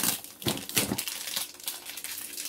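Hands handling a cardboard box and its packaging: a run of crinkling, scraping rustles, the loudest right at the start.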